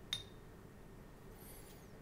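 A single sharp clink with a brief high ringing tone about a tenth of a second in: a paintbrush knocking against the rim of the water or ink pot. Faint high scratchy sounds follow about halfway through.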